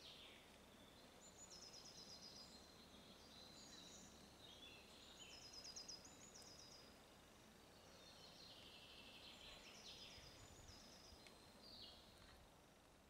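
Faint songbird song: several short phrases of quickly repeated high notes, over quiet outdoor background noise.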